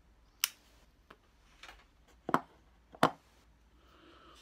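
Short, sharp pops of a tobacco pipe being puffed while a lighter flame is held to the bowl to relight it; the three loudest come about half a second, two and a quarter, and three seconds in.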